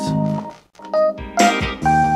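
Kawai ES8 digital piano sound played back through a pair of IK Multimedia iLoud Micro Monitors: held notes that die away about half a second in, then fresh notes entering one after another over the next second.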